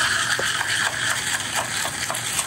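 Seltzer water poured from a plastic bottle into a glass of crushed ice, a steady fizzing pour, with light clicks of ice as a wooden stick stirs it.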